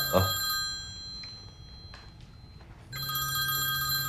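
Smartphone ringtone for an incoming call: one ring fades out about half a second in, and the next starts about three seconds in, each a steady, bell-like chord of several high tones.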